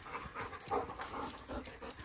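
German Shorthaired Pointer panting softly and unevenly as it trots, a rope toy held in its mouth.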